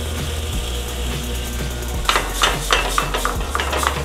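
Utensil knocking and scraping against a stainless steel skillet as a coconut curry is stirred, a run of sharp knocks in the second half, over a steady low hum and a light sizzle.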